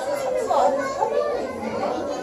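Crowd of visitors talking over one another, with children's voices among them, a continuous babble of many voices.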